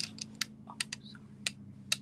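A handful of sharp, short clicks at irregular gaps of roughly half a second, from someone operating a computer, over a low steady electrical hum.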